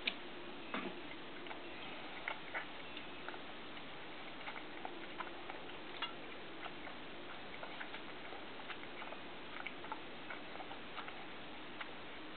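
Steady faint hiss with scattered, irregularly spaced light clicks and ticks, a sharper one right at the start and about a second in.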